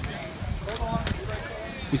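Wind rumbling on the microphone, with faint voices of a crowd talking.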